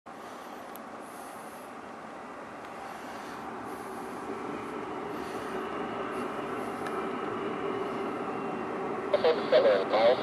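Diesel locomotives of a distant Norfolk Southern intermodal freight train approaching: a steady rumble that grows gradually louder.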